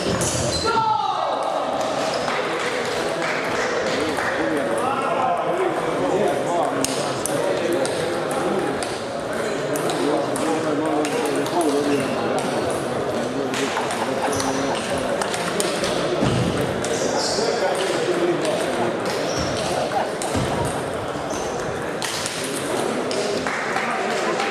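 Table tennis balls clicking off bats and tables in rallies at several tables at once, over steady chatter of voices in the hall.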